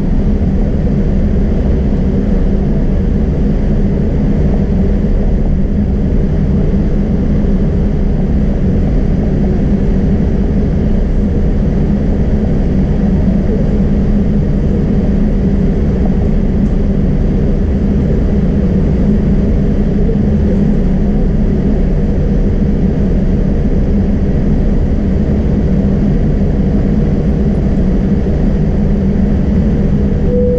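Boeing 787 cabin noise while taxiing: the engines' steady, even hum heard from inside the cabin by the window, with a constant low drone and a faint steady tone above it.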